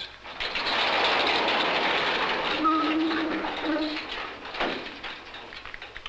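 Steady mechanical rattling and rushing from a motorized wall display panel being moved into view. It fades out about four and a half seconds in.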